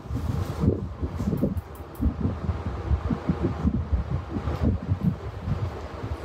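Fabric rustling and rubbing close to the microphone as a dupatta is arranged over the shoulders, an irregular run of low muffled bumps and brushing.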